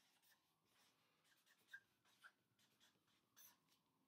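Very faint, irregular scratching and ticking of a pen writing.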